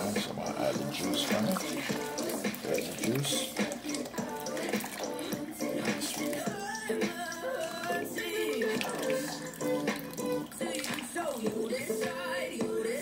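Background music with a singing voice, over the splash of liquid being poured from a can into a full pot of bean cooking liquid.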